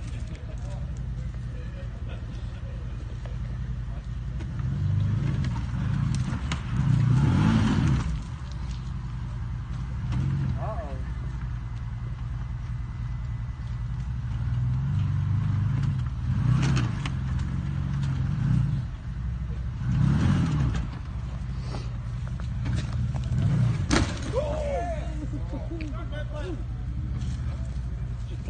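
Side-by-side UTV engine running at low revs as the machine crawls over rock ledges, swelling with several short bursts of throttle.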